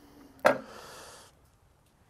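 A single sharp knock as a knife blade cuts through a pomegranate and meets the wooden board, followed by a brief faint hiss as the fruit is parted.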